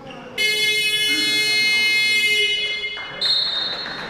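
Sports-hall scoreboard buzzer sounding loudly for about two and a half seconds, starting suddenly. A shorter, higher tone follows about three seconds in.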